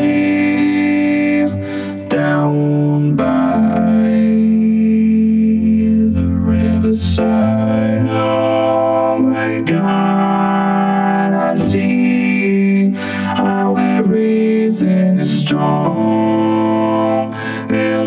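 Vocoder and keyboard music: sustained synth chords that change every one to three seconds, with no clear words.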